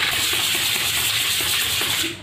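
A plastic bottle cap rubbed rapidly back and forth on sandpaper, making a steady, scratchy hiss as its rough edge is smoothed.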